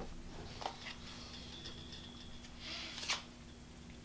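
Tarot cards being handled on a cloth-covered table: faint soft sliding and rustling of the cards, with a sharper click about three seconds in as the deck is picked up.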